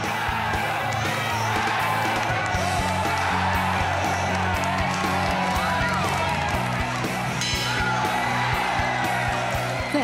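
Background music with a steady beat, mixed with a crowd cheering and yelling.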